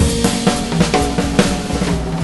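Swing jazz song in an instrumental break: a drum kit plays a run of snare and bass drum hits with the band's held notes underneath, and no vocal.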